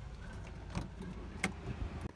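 Car heard from inside the cabin: a steady low rumble with two sharp clicks, the first near the middle and the second about two-thirds of a second later.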